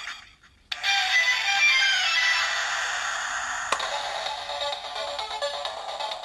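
Electronic game-style music and jingle from a DX Kamen Rider Ex-Aid toy (the Kamen Rider Chronicle Gashat), starting suddenly about a second in. A sharp click comes just past the middle, and then a steady looping tune.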